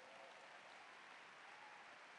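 Near silence: faint, steady room tone in a pause between spoken phrases.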